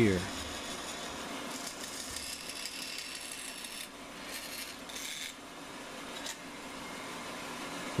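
Rikon bandsaw running as its blade cuts through reclaimed pallet wood to free a CNC holding tab. The cutting noise brightens in two spells, from about a second and a half in and again briefly around four and a half seconds, over the steady hum of the saw.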